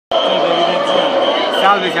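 Close-up men's voices talking, over faint crowd noise and a steady high-pitched tone.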